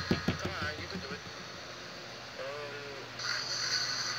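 Short bits of a person's voice, without words, with a cluster of sharp clicks in the first second; a steady high hiss comes in at about three seconds.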